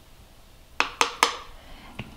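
Three quick, light clicks about a quarter second apart: a small metal measuring spoon tapping against a plastic canning funnel and jar.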